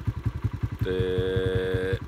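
An engine running steadily, making a fast, even low chugging. About a second in, a steady pitched tone sounds over it for about a second, then stops.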